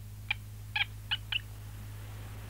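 Four short, high chirping squeaks from a small cartoon pet monkey, over a low steady hum.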